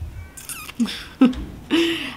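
A woman's short wordless vocal sounds: a few brief closed-mouth hums that bend in pitch, then a breathy laugh starting near the end.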